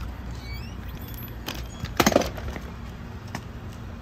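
A single loud knock or clatter about two seconds in, over a low steady rumble.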